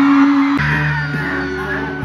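Live band playing in a concert hall, heard from the crowd: electric guitar, bass and drums through the PA. The music jumps abruptly about half a second in, where the recording is cut.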